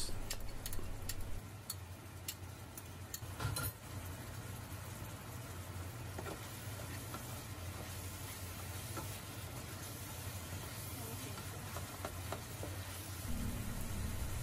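Diced chicken sizzling softly in a nonstick frying pan as a soy and oyster sauce mix is spooned in and stirred through with a plastic spatula. There are light clicks of the spoon and spatula in the first few seconds and one louder knock about three and a half seconds in, then a steady gentle sizzle over a low hum.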